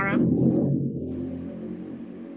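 Low rumbling noise on an open video-call microphone, fading slowly over the two seconds.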